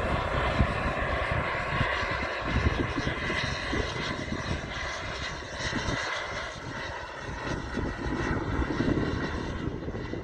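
Radio-controlled BAE Hawk model jet in flight, its engine giving a steady whine of several high tones that eases off slightly towards the end as the jet moves away. Wind rumbles on the microphone underneath.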